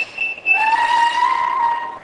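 The sublimation machine's beeper sounds a couple of short high beeps, signalling that the print cycle has finished. Then the machine's platen drawer is pulled out on its metal telescopic slides, making a metallic whine that rises a little and then holds for over a second.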